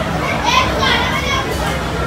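Indistinct high-pitched voices, a child's among them, for about a second over steady background noise.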